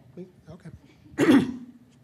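A man clears his throat once into a handheld microphone, about a second in.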